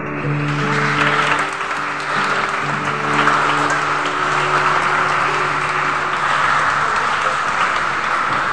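Audience applauding, starting just after the song's last note and continuing throughout, over the accompaniment's final held chord, which rings for about seven seconds and then stops.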